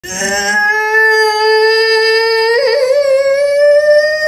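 A woman in labour giving one long, high, strained cry while bearing down during a push; the cry is held without a break, its pitch slowly rising, with a brief waver about two and a half seconds in.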